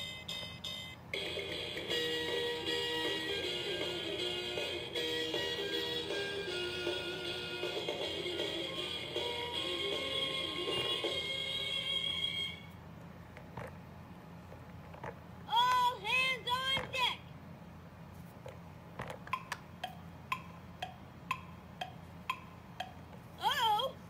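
Bucky pirate-ship toy playing a short electronic tune through its small speaker for about eleven seconds, then stopping. After it come faint clicks and a brief burst of voice about sixteen seconds in.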